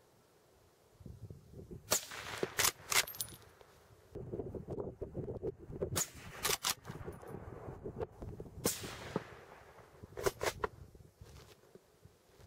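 A suppressor-fitted Blaser rifle being fired and handled. Several sharp reports and metallic clicks come in clusters, from the shots and the bolt being worked, with rustling of handling between them.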